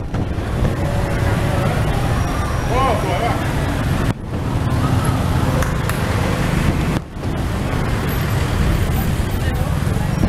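Street traffic heard from a vehicle moving in slow traffic: a steady mix of car and motorbike engines and road noise with a heavy low rumble. The sound briefly cuts out twice.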